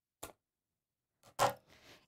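Scissors snipping through a drinking straw once, a single short sharp click, followed about a second later by a second, louder brief sound.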